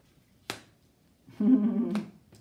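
A single sharp click about half a second in, from a tarot card being flipped or laid down on the table. Near the end comes a louder, short vocal sound from a woman.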